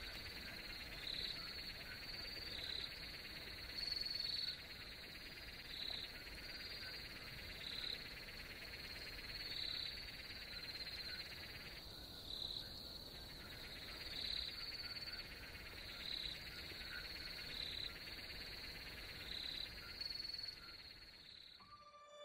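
Faint night ambience of crickets, possibly with frogs: a steady high trill with a louder chirp repeating about every second and a half. The lower part of the chorus drops out briefly about halfway through, and all of it fades out just before the end.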